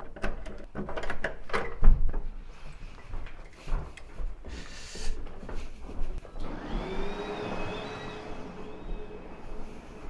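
A key clicking and rattling in a hotel room door lock, with sharp knocks over the first two seconds. From about six and a half seconds a steady motor hum with a wavering high whine sets in.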